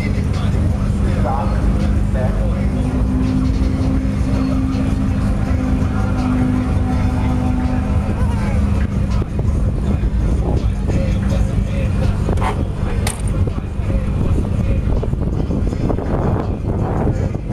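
Turbocharged Datsun 240Z's engine idling with a steady low rumble, with a short sharp knock near the end, the car's door being shut.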